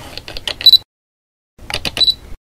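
Camera sound effect for a lens intro: two short runs of rapid mechanical clicks, like a lens focusing, each ending in a brief high beep like an autofocus confirmation.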